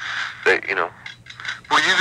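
Speech only: a man's voice in short bursts of talk from a taped telephone interview, with a pause between them.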